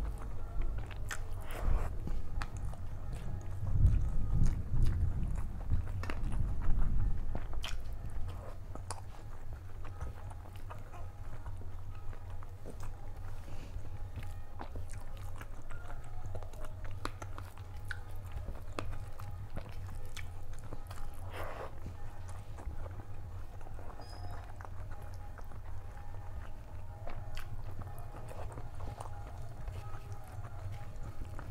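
Close-miked chewing and mouth sounds of a person eating rice and curry by hand, with many small clicks and soft crunches; the chewing is loudest for a few seconds from about four seconds in. Fingers mixing rice on a steel plate add light scrapes and taps.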